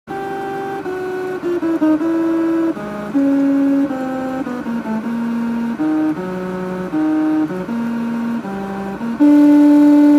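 A run of held horn-like tones changing pitch from note to note like a simple tune, sometimes two at once. The last note, from about nine seconds in, is the longest and loudest.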